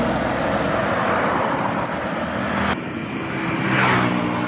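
Roadside traffic noise, steady, with the hum of a passing vehicle's engine near the end. The sound changes abruptly a little under three seconds in.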